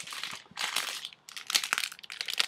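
Soft plastic pack of makeup remover wipes crinkling as it is handled, in a few irregular rustles.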